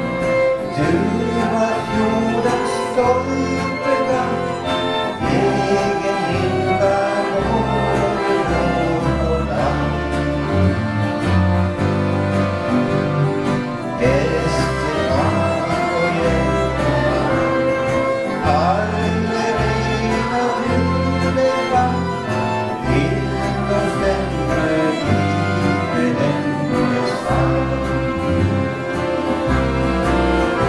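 Accordion orchestra playing a song tune: several piano accordions together with a fiddle, electric guitar and bass guitar, at a steady level without breaks.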